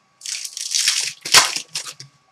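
Clear plastic packaging crinkling as it is handled, in several rustling bursts, loudest about two-thirds of the way through.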